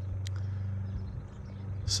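A steady low mechanical hum, with one faint click about a quarter second in.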